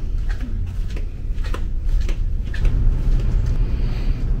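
Steady low rumble inside a cruise ship, with a few faint knocks.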